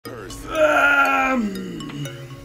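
A man's drawn-out groan while stretching, loud and sliding down in pitch at the end, over background music with held tones.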